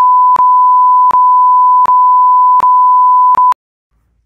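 A censor bleep: one loud, steady, pure high tone laid over a swear word in place of the spoken answer. It has faint clicks about every three quarters of a second and cuts off sharply about three and a half seconds in.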